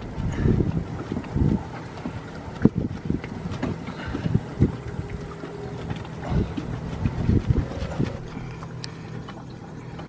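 Strong wind buffeting the microphone in irregular low rumbles and thumps.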